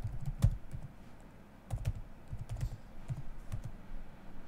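Computer keyboard keystrokes: a quick run of key presses, a pause of about a second, then more keystrokes, as a password is typed at a terminal prompt.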